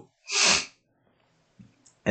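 One short, breathy burst of air from a person close to a headset microphone, lasting about half a second.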